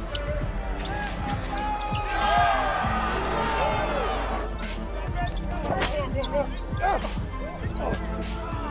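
Basketball game sound on a hardwood court: a ball bouncing and many short sneaker squeaks. The crowd noise swells about two seconds in and eases off about halfway through.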